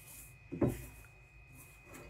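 Faint rubbing and crumbling of hands working butter into flour in a ceramic mixing bowl, with one soft bump a little over half a second in.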